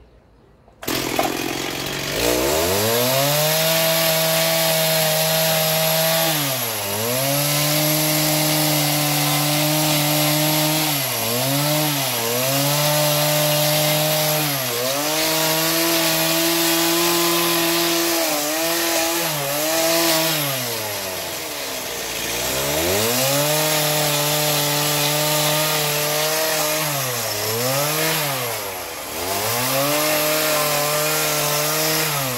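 Small gasoline chainsaw starting about a second in, then running and cutting wooden formwork boards; its engine pitch dips and recovers again and again as the chain bites into the wood, and sinks low for a couple of seconds about two-thirds of the way through before picking up again.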